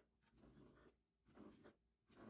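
Very faint kitchen knife slicing through peeled bananas onto a plastic cutting board, two soft cuts about a second apart.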